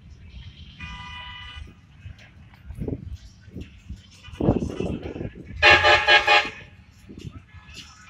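Vehicle horns honking from passing parade cars and trucks: one honk about a second in, then a louder run of quick honks around six seconds in, over low traffic noise.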